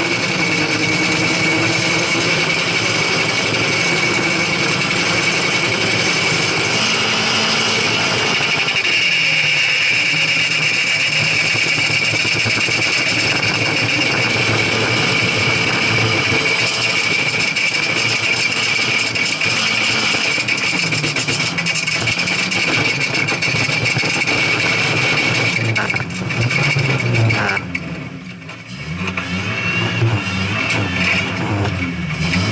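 Lada rally car's engine running hard on an ice track, its pitch rising and falling with the throttle and gear changes over a steady hiss of tyres on ice and snow. The sound drops briefly near the end, then picks up again.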